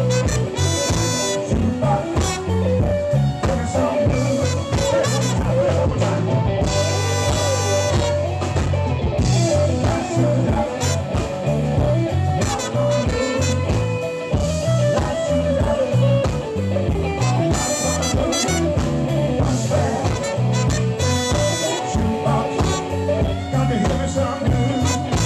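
Live blues band playing, with a horn section of trombone and saxophones over electric guitar, bass and drums.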